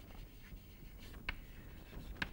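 Chalk writing on a blackboard: faint scratching strokes, with one sharper tap of the chalk just over a second in.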